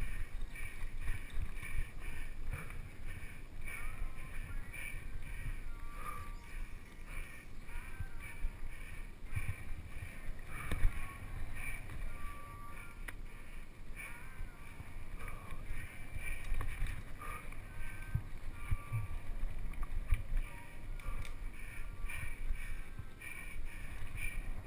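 Mountain bike ridden along a dirt singletrack trail: a steady rumble of tyres over dirt and wind on the microphone, with scattered knocks and rattles over bumps, the loudest about eleven seconds in.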